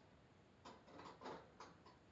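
A handful of faint, quick metallic clicks and taps in the second half: a small padlock knocking against the wire bars of a hamster cage as it is pushed through them.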